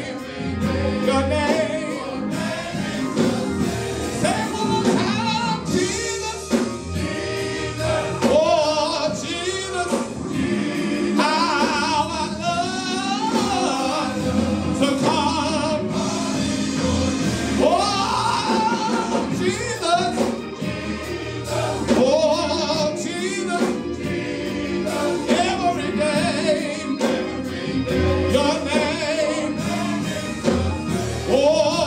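Live gospel singing by a men's vocal group, with musical accompaniment and a steady low bass underneath.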